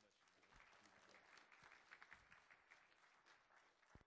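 Congregation applauding, faint and steady, with many fine claps blended together; it stops abruptly at the end.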